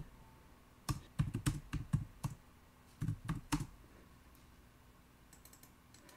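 Typing on a computer keyboard: a quick run of keystrokes about a second in, a shorter run about three seconds in, and a few faint taps near the end.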